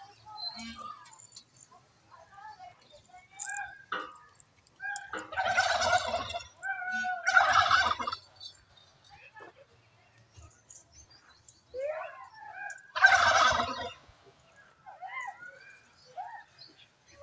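A bird calling loudly in three bursts of about a second each, around five to six, seven to eight, and thirteen seconds in, with fainter short chirps between.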